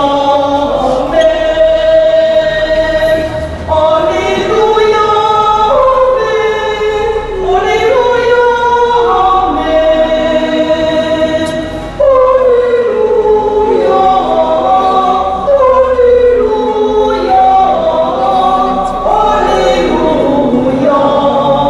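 A church congregation singing a hymn together, voices holding long notes that move to a new pitch every second or two.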